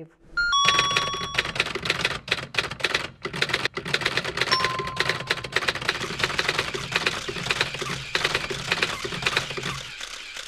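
Typewriter sound effect: rapid, continuous keystrokes with a bell ding about half a second in and a fainter ding around four and a half seconds, accompanying text typing out in an animation.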